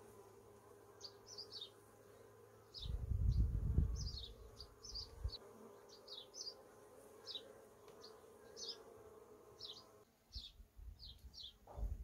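Honey bees from an opened hive buzzing steadily while a comb frame is lifted out. Short, falling bird chirps repeat throughout, and a loud low rumble about three seconds in is the loudest sound.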